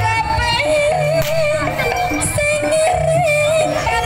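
Live Javanese jaranan ensemble music: a high, wavering lead melody over steady drumming and low, sustained gong-like tones.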